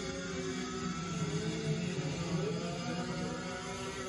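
Several go-kart engines running hard together in a race, a steady high-revving drone whose pitch dips and climbs again about halfway through as karts pass.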